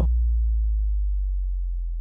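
Deep, steady electronic bass tone, the last note of a DJ remix, holding and slowly fading as it rings out.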